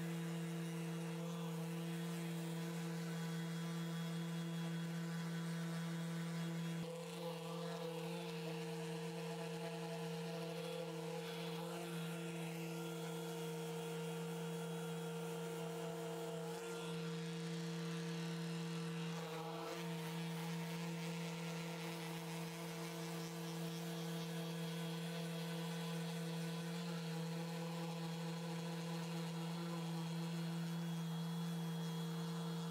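Electric random orbital sander running steadily on a solid-wood guitar body and neck, a constant motor hum that wavers slightly a few times as the pressure on the pad changes.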